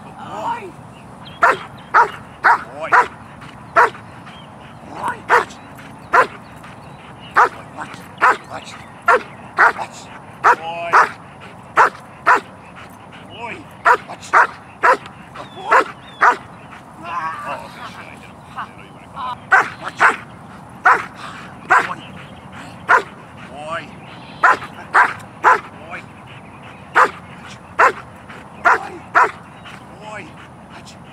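A German shepherd barking over and over in short, sharp barks, roughly one or two a second with brief pauses. It is a protection dog's threat barking at a decoy while the handler holds it under control.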